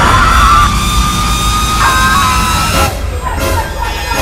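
Horror-trailer score with a deep low rumble, and teenagers screaming over it in high, held screams that die away about three seconds in.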